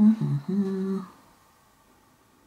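A woman humming briefly, three short held notes with the middle one lower, over about a second.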